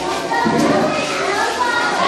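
Many young children's voices at once, an overlapping classroom chatter.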